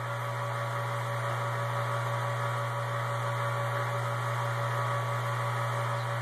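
Steady hum and rush of a homebrew rig's pump recirculating hot wort through a plate chiller, with cooling water running through it.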